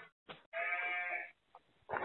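A sheep bleating once, a single held call of under a second, just after a brief tick.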